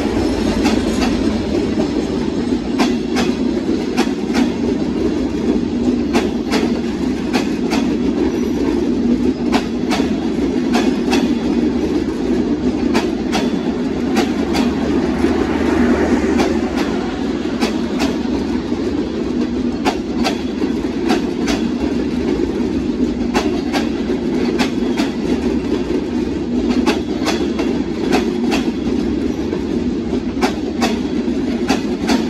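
Bangladesh Railway intercity passenger coaches of the Benapole Express rolling past close at speed: a steady rumble of wheels on rail, broken by repeated sharp clicks as the wheels cross rail joints.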